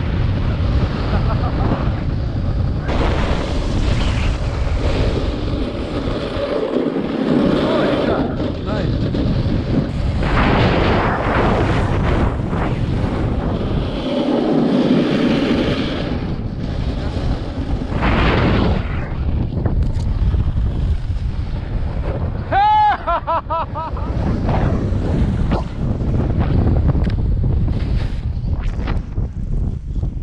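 Strong wind buffeting an action camera's microphone. Over it come stretches of hissing scrape from a snowboard edge carving across firm, wind-packed snow. About two-thirds through there is a brief wavering, pitched tone.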